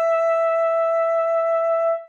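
Solo alto saxophone holding one long note with a light vibrato, cut off right at the end.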